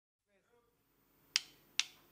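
Two sharp stick clicks about half a second apart, a drummer's count-in before a live dangdut koplo song starts, over a faint low murmur.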